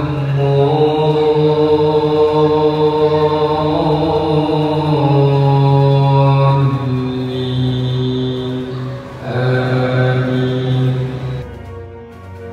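A man's voice chanting Quran recitation in long drawn-out notes, with a short break about nine seconds in.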